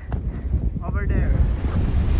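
Wind buffeting the microphone: a low rushing noise that grows louder, with a brief snatch of a voice about a second in.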